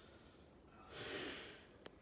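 A man takes one loud breath about a second in, close to the phone's microphone, lasting under a second. It is followed by a short click just before he speaks again.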